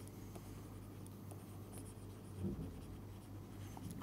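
Faint scratching and tapping of a stylus writing on a tablet screen, over a steady low electrical hum.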